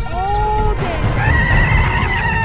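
A whinny-like call over background music: a pitched tone glides up and holds, then about a second in a higher, slightly wavering call follows.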